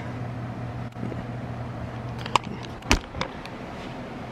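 Engine of a parked box truck idling, a steady low hum heard through a window, fading as the camera turns away about three seconds in. A single sharp knock comes just before that.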